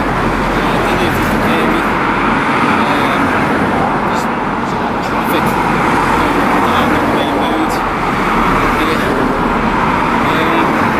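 Road traffic: cars driving past one after another, a steady rush of tyre and engine noise.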